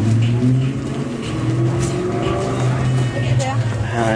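Steady low drone of a car engine idling, with people talking over it.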